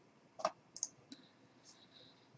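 A few faint, short clicks from a computer mouse, the loudest about half a second in.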